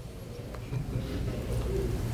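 Low steady hum of room noise during a pause in speech, growing slightly louder about half a second in.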